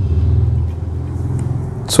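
A low, steady rumble that fades slightly towards the end.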